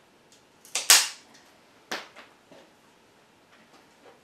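Bonsai cutters snipping through a Japanese maple branch: a loud, sharp double crack about a second in, another snap near the middle, then a couple of smaller clicks as the blades work the cut.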